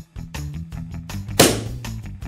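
A microwaved egg bursting with one sudden loud pop about one and a half seconds in, over background music with a steady beat.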